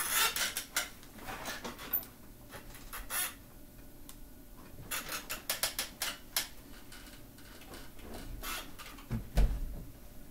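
Scattered clicks, knocks and rustling of clothing as a person with weak legs gets up out of a wheelchair and braces against the closet doorway, with a dull thump a little before the end.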